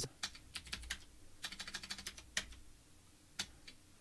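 Computer keyboard typing, quiet: a run of irregular keystrokes, including backspaces, with a brief lull about two and a half seconds in and one more keystroke near the end.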